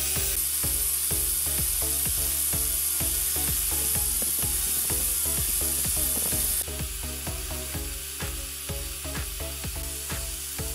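Angle grinder with a wire-wheel brush scrubbing rust off a steel threaded rod, a loud high hiss that drops away sharply about two-thirds of the way through, under background music with a fast, steady beat.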